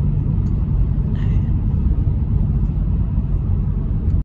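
Steady low rumble of road and engine noise heard inside a car's cabin while driving at freeway speed.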